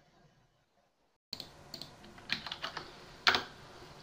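Computer keyboard typing: a few irregular keystrokes over faint background hiss, starting after about a second of silence. The last keystroke, near the end, is the loudest.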